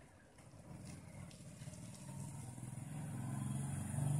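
A motor vehicle's engine, a low hum that grows louder toward the end.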